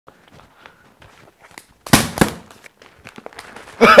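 A plastic bottle of liquid being grabbed and shaken: two sharp sudden noises about two seconds in, after faint handling clicks.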